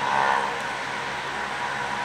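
A parked Honda sedan idling with a steady engine hum under a wash of street noise, a little louder in the first moment.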